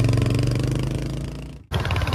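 Motorcycle engine running as the bike rides along, with a fast, even pulse. It fades out and cuts off abruptly near the end.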